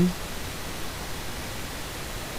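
Steady hiss of background noise with no other sound, at the tail end of a spoken word.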